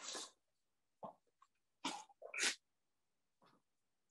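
A few short bursts of plastic wrapping crinkling as a clear plastic rain cover is unwrapped and handled.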